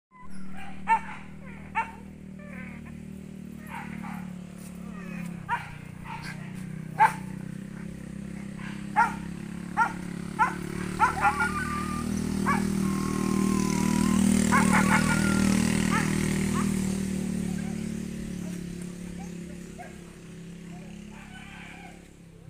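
A dog barking repeatedly, a dozen or so short sharp barks spread through the first half, over a steady low hum that swells in the middle and fades out near the end.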